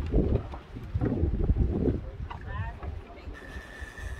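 Wind rumbling on the phone's microphone, loudest in the first two seconds, with brief voices in the background. A thin steady high tone starts about three seconds in.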